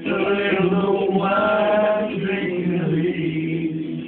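A man singing a slow song, drawing out long held notes.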